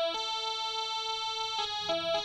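Casio SA-41 mini keyboard playing a slow melody in long held notes with a bright, buzzy tone, a new note starting about one and a half seconds in and another just before the end.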